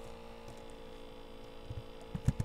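Steady electrical hum picked up by the recording, a constant tone with no speech over it, with a few faint low taps in the second half.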